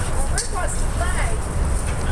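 Dogs whining: a few short high-pitched whines that slide up and down in the first second and a half, with a sharp click in among them, over a steady low rumble.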